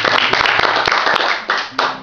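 Audience clapping at the end of a song, dying away near the end.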